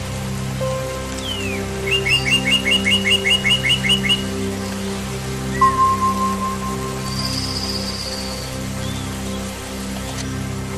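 Songbirds singing over soft ambient music with long held low notes. About two seconds in, one bird gives a fast run of about a dozen repeated notes lasting two seconds, and a higher whistled note follows later.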